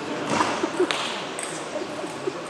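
Several sharp clicks of table tennis balls striking bats and tables, bunched in the first half, over the steady chatter of voices in a sports hall.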